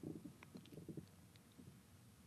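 Near silence: room tone with faint low rumbles in the first second and a few light ticks.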